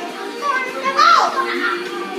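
A child's brief yell, rising and falling in pitch, about a second in, over steady background music.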